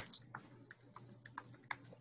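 Faint typing on a computer keyboard: a string of light, irregularly spaced key clicks.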